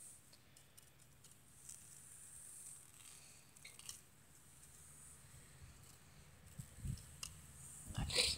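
Near silence, with a few faint clicks and a couple of soft low thumps near the end.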